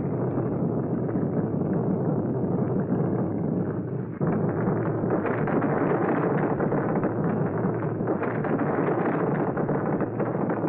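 Steady roar of large burning flames, a dense rushing noise that dips briefly about four seconds in and then comes back at full level.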